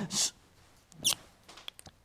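A dry-erase marker on a whiteboard gives one brief squeak about a second in, followed by a few faint ticks.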